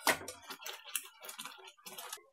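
A knock on the steel pan at the start, then irregular quick clicks and pops from thick, sugary lemon chutney in a hot kadhai just taken off the flame.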